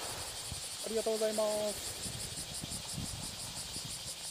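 Insects chirping in a steady, rapid, high-pitched pulse, with a brief spoken phrase about a second in.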